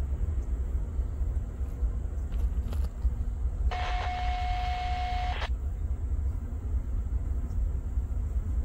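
Steady low rumble of a diesel freight train approaching slowly at a distance. About midway, a hiss with a steady whistle-like tone sounds for under two seconds and cuts off suddenly.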